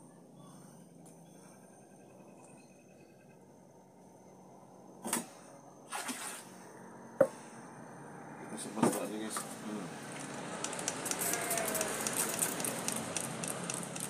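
A few sharp knocks of a scoop and stirring stick against a plastic bucket. Then, from about ten seconds in, a hand spray bottle is pumped in quick repeated squirts onto foam that is rising from a caustic soda and hydrogen peroxide reaction.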